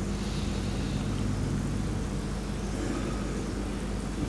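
Steady low hum with an even background noise, unchanging throughout.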